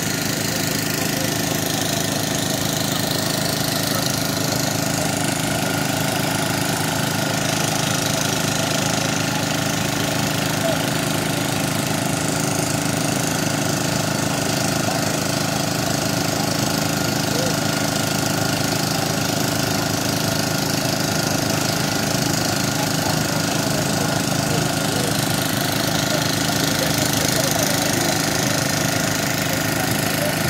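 An engine running steadily at an even speed throughout, with a constant hum.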